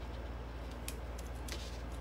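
A few faint clicks from cutters snipping an artificial berry stem, about a second in and again around a second and a half in, over a steady low electrical hum.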